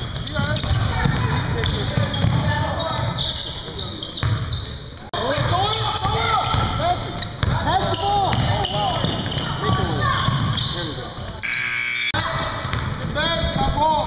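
Indoor basketball game on a hardwood gym floor: sneakers squeak sharply over and over, a ball bounces, and players' voices echo in the hall. The sound breaks off abruptly twice, at about five seconds and again near twelve seconds.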